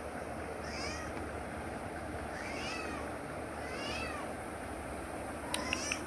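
Domestic cat meowing three times, short calls that rise and then fall in pitch, followed by a few sharp clicks near the end.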